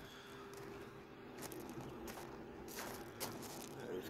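Faint footsteps crunching on gravel: several scattered steps, mostly in the second half.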